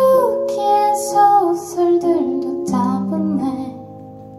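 A woman singing a slow melody to her own electric keyboard accompaniment. Her voice drops out near the end, leaving a held keyboard chord.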